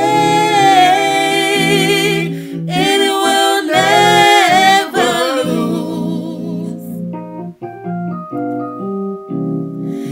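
A man and a woman singing a gospel duet with vibrato over keyboard accompaniment. The voices drop out about seven seconds in, leaving the keyboard playing held chords alone.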